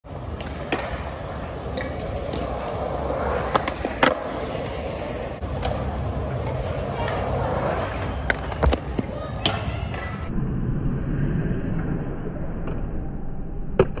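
Skateboard wheels rolling over a concrete bowl, the rolling noise swelling and fading as the board rides through the transitions, with sharp clacks of the board and trucks hitting the concrete. The sound turns duller and narrower about ten seconds in.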